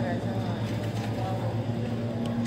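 Red plastic shopping cart's wheels rolling over a smooth store floor, a steady low rumble, with a faint voice near the start.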